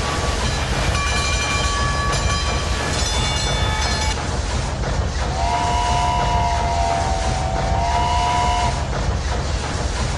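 A train running with a steady rhythmic chugging. Whistle tones sound from about a second in to four seconds, then a lower two-note whistle is held from about five seconds in until nearly nine.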